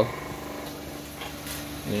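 Steady low electrical hum from a power inverter running under the load of a lit bulb. A voice is heard at the very start and again at the end.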